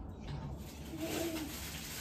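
A faint, low bird call, a short coo about a second in, over steady room noise.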